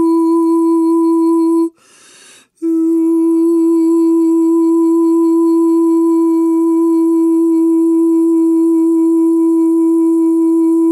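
A woman humming one long, steady note. She breaks off for just under a second about two seconds in, then takes up the same note again.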